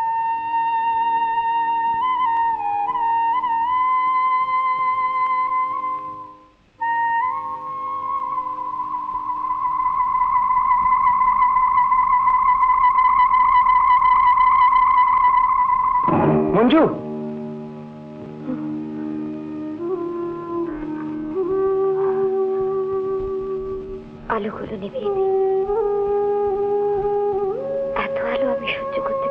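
Dramatic film background score: long, slightly wavering high held notes over softer sustained chords, a sudden short sweep about sixteen seconds in, then lower held notes.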